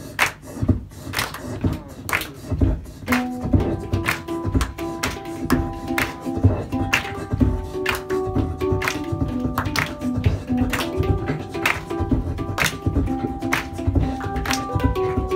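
Beatboxing into a microphone, a steady rhythm of vocal percussion hits. About three seconds in, a hang drum joins, playing ringing pitched notes over the beat.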